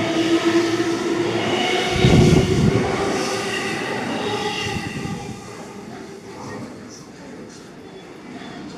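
JR East E233-series electric commuter train pulling out of a station and gathering speed past the platform. Its motors whine steadily over the rolling wheel noise, with a low rumble about two seconds in, and the whole sound fades as the train draws away.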